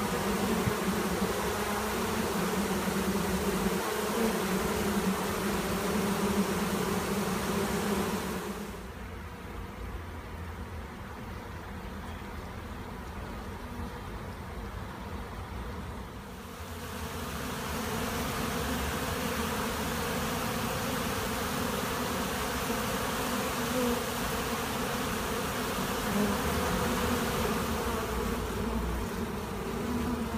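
A swarm of honeybees buzzing en masse over an open hive: a steady, low, dense hum. It turns quieter for about eight seconds in the middle, then swells back.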